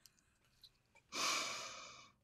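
A woman's audible sigh: one breathy out-breath that starts about a second in and slowly fades away.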